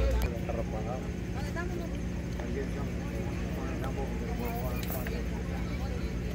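Faint, distant voices of players and onlookers calling and chattering across a ball field, over a steady low hum.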